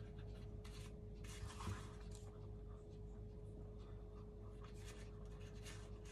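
Faint rustling and rubbing of craft paper as a yellow paper petal is pinched and shaped by hand, in short irregular strokes over a steady faint hum.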